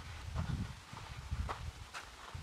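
Footsteps on loose broken rock and shale: a few soft, uneven steps with light clicks of stone, about half a second and a second and a half in.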